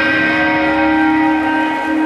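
Amplified electric guitar feedback: a steady drone of several ringing tones held through the amps, with no drums or rhythm.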